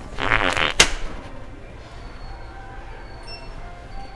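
A loud fart of about half a second, starting a fraction of a second in and ending abruptly in a sharp click.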